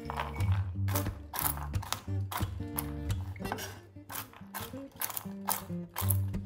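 Walnut halves tipped onto a wooden cutting board and chopped with a chef's knife: irregular sharp knocks and clatter, about two a second, over background music.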